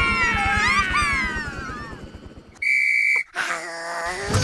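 A single shrill whistle blast of about half a second, like a police officer's whistle, cutting off sharply. Before it come falling, sliding cartoon sounds.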